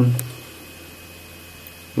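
A man's drawn-out spoken "now" trailing off, then quiet room tone with a faint steady high hum.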